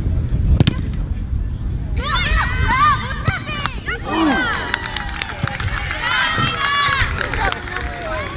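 Several high voices shouting and calling out at once, overlapping, from about two seconds in, with wind rumbling on the microphone. There is a sharp knock about half a second in.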